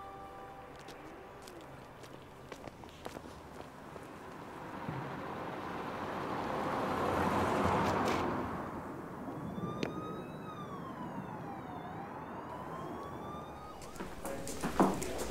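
Street ambience with a swell of rushing noise that rises and fades around the middle, then a faint siren wailing slowly down and back up in pitch over the last few seconds.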